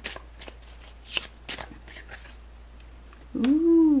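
A deck of tarot cards being handled and shuffled, giving a handful of short, crisp flicks and rustles while a card is drawn for the spread. Near the end a woman's voice says a drawn-out, rising-and-falling "ooh".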